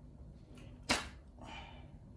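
A katana being drawn from its scabbard: a sharp click about a second in as the blade comes free, then a short scraping slide of the steel blade out of the sheath.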